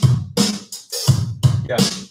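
A programmed drum-machine groove playing back from recording software: kick, snare and closed and open hi-hats, quantized to sixteenth notes. The beat is evenly spaced, very robotic and on the grid.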